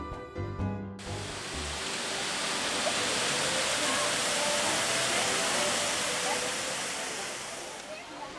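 Waterfalls pouring down an artificial rock formation: a steady rushing of falling water that fades in about a second in and dies away near the end.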